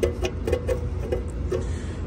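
Several light clicks and taps from fingers handling the spring-loaded retaining pin on a metal air cleaner housing. A steady low hum runs underneath.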